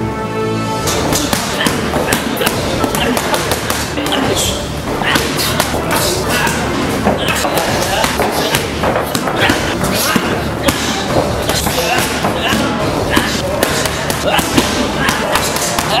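Punches and kicks landing on Thai pads, a run of quick, irregular thuds, over music.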